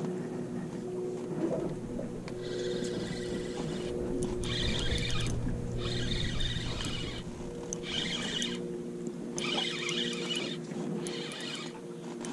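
Spinning reel being cranked in short spells of about a second each, whirring as line is wound in. A steady low hum runs underneath.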